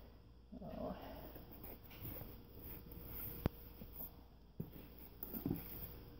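Cardboard shipping box flaps being lifted and handled, with faint rustling and scraping, a sharp click about halfway through and a knock about a second later.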